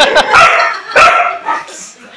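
A German Shepherd-type dog barking loudly, a few sharp barks in the first second or so, then trailing off.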